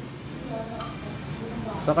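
Steady low hum of a freezer's motor compressor running under a faint voice. The compressor is holding the pressure above 200 without dropping, which the technician takes as a sign that it is good.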